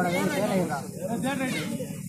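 Several men's voices calling and talking over one another, over a steady low hum.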